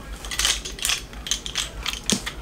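Irregular clicks and rattles of small hard plastic items being handled and set down, several a second.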